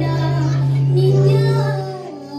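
A woman singing a melodic line into a microphone over musical accompaniment, with a steady low note under her voice that drops away near the end.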